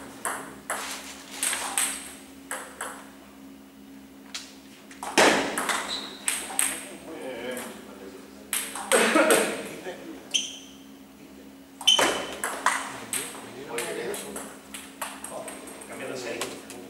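Table tennis ball clicking sharply and irregularly off rackets and the table, with louder bursts of activity about five, nine and twelve seconds in.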